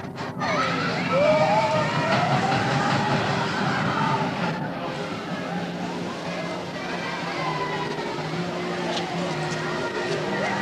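Amusement-park din: music playing over people's voices, with a rising and falling tone in the first few seconds. There is a brief dropout at the very start.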